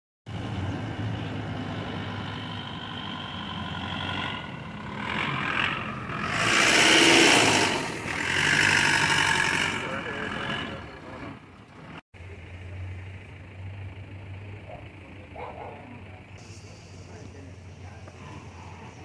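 Motor vehicle running and driving along a lane, with a loud rushing surge in the middle; after a sudden cut about twelve seconds in, a quieter low hum with faint voices.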